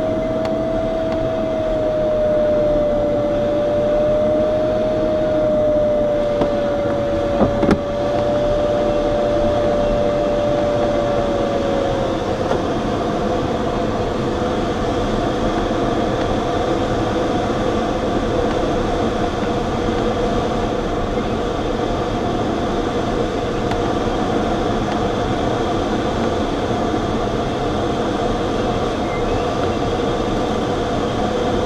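Steady rush of air over a glider's cockpit, with the audio variometer's single continuous tone, whose pitch follows the climb rate. The tone slides slightly lower and grows fainter about twelve seconds in. There is a brief click near eight seconds.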